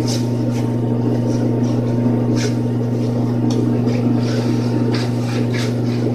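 Ceiling exhaust fan running with a steady, loud low hum, with short rustles of a shirt and necktie being knotted over it.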